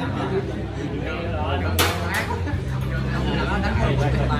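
Indistinct chatter of several people over a steady low hum, with two sharp clicks about two seconds in.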